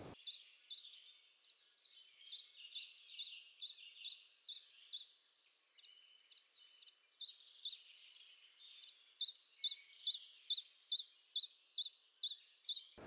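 A small songbird singing a long series of short, high chirping notes. They come irregularly at first, then settle into a steady run of about three notes a second from about seven seconds in.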